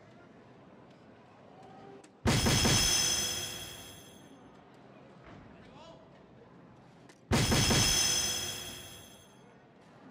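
Electronic soft-tip dartboard's scoring sound effect, played twice about five seconds apart as darts land in the triple 15. Each is a sudden loud electronic burst with ringing tones that fades over about a second and a half, with low hall noise between.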